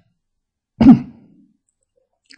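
A man clearing his throat once, briefly, just under a second in.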